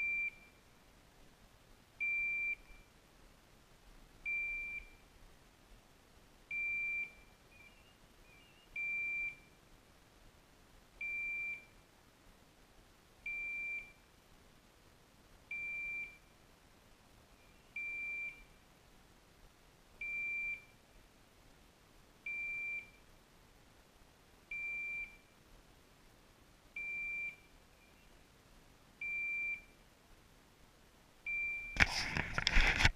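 Hunting dog's beeper collar giving a single high electronic beep about every two seconds, evenly spaced, fourteen times.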